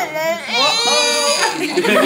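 A baby's cry: one high-pitched wavering wail starting about half a second in and lasting about a second.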